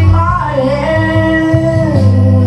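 A man singing into a handheld microphone over backing music, holding long, wavering notes.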